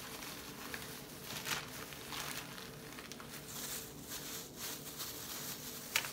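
Soft, intermittent rustling and crinkling of loose plastic food-prep gloves and a zipper bag while raw ground meat is shaped into meatballs by hand, over a faint steady hum.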